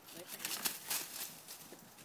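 Quick footsteps and scuffs crunching on dry leaf litter during a frisbee throw, a burst of crunches in the first second or so, then quieter.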